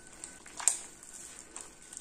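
A hand working sticky bread dough of flour, egg, oil and water in a bowl: quiet sticky handling sounds, with one sharper click about two-thirds of a second in.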